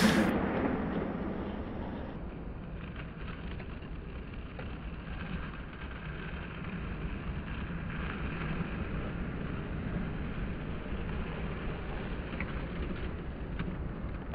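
Steady low rumble and hiss of outdoor street ambience picked up by a camcorder's microphone, with a few faint clicks.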